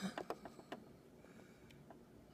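A few faint clicks and taps from hands working at a sewing machine's needle plate and thread, mostly in the first second, over a quiet room.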